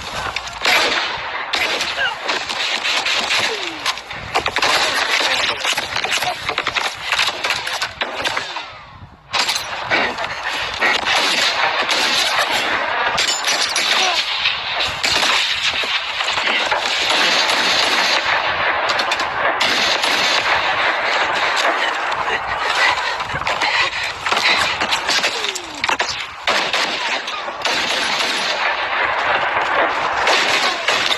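Film battle soundtrack: sustained rapid gunfire in a forest firefight, shots cracking close together almost without pause. There is a brief lull about nine seconds in, after which the firing resumes.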